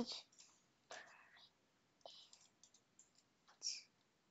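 Near silence, with faint whispering and a few soft keystrokes on a computer keyboard as the word "Print" is typed.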